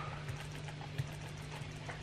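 A steady low electrical hum in the recording, with a few faint computer-mouse clicks; the sharpest click comes about a second in.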